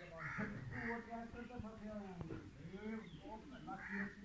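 Several short, harsh bird calls like caws, near the start and again near the end, over people talking in the background.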